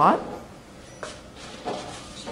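A voice trails off at the start, then a single light knock about a second in, then the low sound of a quiet room.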